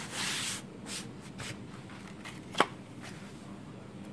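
Hands rubbing and pressing on a Lenovo IdeaPad 3 laptop's plastic bottom cover to seat it: a rubbing swish at the start, a few soft knocks, then one sharp click about two and a half seconds in.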